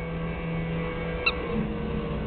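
A steady low hum, broken just past halfway by one very short, high-pitched squeak from a puppy's squeaky toy.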